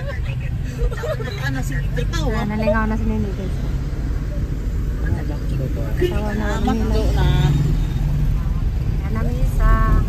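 Steady low rumble of a car driving, heard from inside the cabin, with voices talking over it at times.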